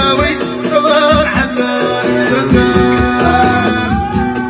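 Live Middle Atlas Amazigh folk song: a man singing into a microphone over a plucked string instrument and a steady drum beat.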